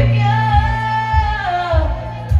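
A woman singing live to her own piano accompaniment, holding one long note that drops away near the end, over a steady low pulse in the bass.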